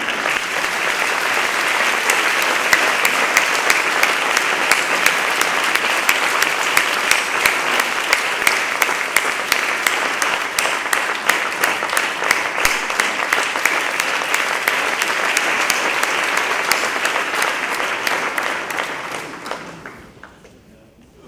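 Audience applauding steadily, a dense mass of clapping that fades away near the end.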